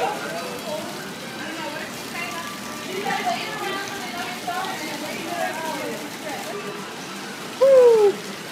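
Steady splashing of a water jet spraying into a small pool in a bear enclosure, with people talking faintly in the background. A person's loud exclamation comes near the end.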